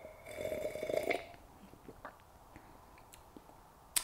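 A slurping sip of hot tea from a wine glass, lasting about a second near the start, followed by quiet with small mouth and glass ticks.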